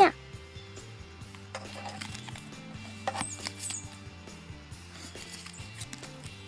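Quiet background music with held, slowly changing low notes. Under it are faint rustles and light taps as a small paper folder is handled over a plastic toy desk.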